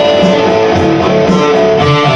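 Electric guitar playing held, ringing notes, with a steady low pulse about twice a second underneath.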